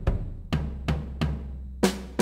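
Sampled acoustic drum hits from Native Instruments' Abbey Road 60s Drums, played one at a time. About four low drum hits come roughly 0.4 s apart, with a low ring under them. A brighter snare hit follows near the end.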